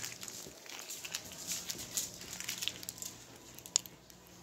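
Faint scattered rustling and light knocks, with one sharper click near the end.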